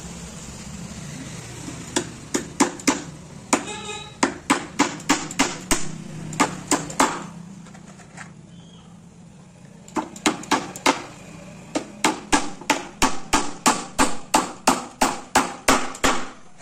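Hammer driving nails into plywood panels, in three runs of sharp blows with a pause in between. The blows come about two to three a second and are quickest near the end.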